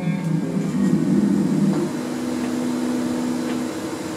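Electric guitar notes left ringing through the amplifier: a low, steady sustained drone with no strumming or beat, with one held note through the second half.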